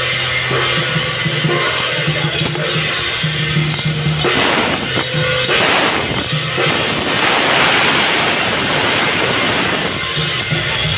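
Temple-festival percussion music accompanying a Ba Jia Jiang dance: drums beating steadily, with repeated cymbal crashes that swell and fade.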